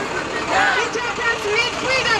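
Many protesters' voices at once, an overlapping babble of talk and calls from a street demonstration crowd.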